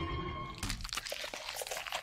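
A music sting cuts off about half a second in, followed by a quick, irregular run of sharp cracks and crunches: cinematic slashing sound effects for Sukuna's Malevolent Shrine domain expansion.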